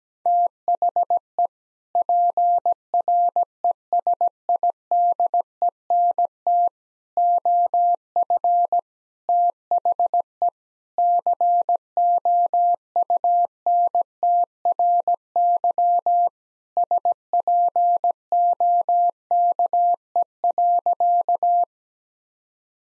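Morse code practice tone: a single mid-pitched beep keyed in dots and dashes at 17 words per minute, sending the sentence "PRESIDENT OF THE COUNTRY SPOKE" as five word groups separated by short pauses.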